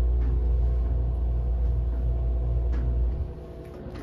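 Schindler 330A hydraulic elevator running, heard from inside the car as a steady low rumble with a faint steady hum above it. The rumble cuts off about three seconds in as the car stops.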